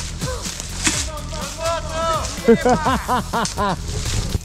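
Voices calling out in short phrases that cannot be made out, over background music.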